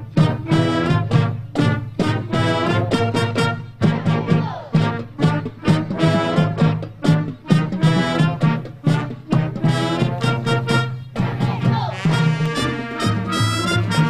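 A high school band playing an upbeat tune on brass instruments over a steady drum beat.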